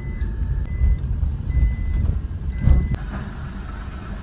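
Car driving slowly over a rough unpaved lane, heard from inside the cabin: a steady low rumble of tyres and engine, with a heavier thump near three seconds in. A high electronic beep repeats about once a second throughout.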